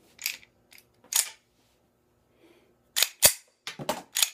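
Walther PK380 pistol's slide being racked and let go by hand, sharp metallic clacks, two in the first second and a half, then a quick cluster of three from about three seconds in, the loudest at about three and a quarter seconds. The pistol is being cycled to clear a jammed cartridge.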